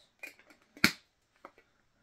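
A handheld can opener being worked on a metal Funko Soda can: a few light clicks and one sharp, loud snap a little under a second in.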